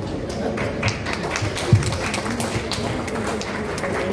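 Scattered, irregular hand claps from an audience, over a murmur of voices, with a couple of low thumps.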